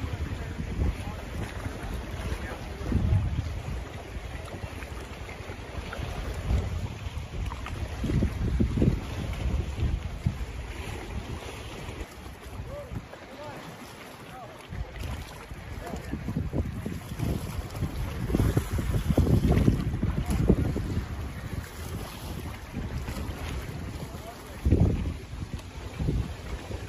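Wind buffeting the microphone in uneven gusts, with the wash of choppy river water underneath.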